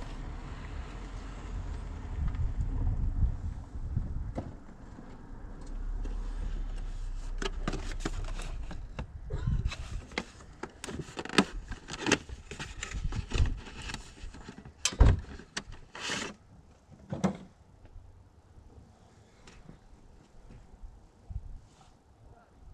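Handling noise from unpacking a new engine air filter from its cardboard box: a busy run of clicks, rustles and knocks, with a couple of sharper knocks past the middle. A low rumble sits under the first few seconds.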